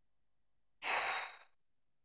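A single close-miked sigh: one sharp, breathy exhale starting a little under a second in and fading out within about two-thirds of a second.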